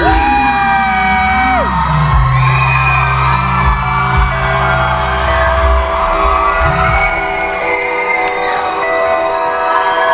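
Live band's held synthesizer chords and deep bass ringing out while the crowd cheers and whoops; the bass drops out about three quarters of the way through.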